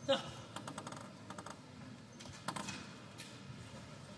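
A short loud cry just at the start, then a quick run of light clicks: a table tennis ball bouncing. Another brief voice-like sound follows about halfway through.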